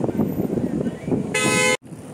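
A car horn sounds one short toot, under half a second long, about one and a half seconds in, over street noise; then the sound cuts off suddenly.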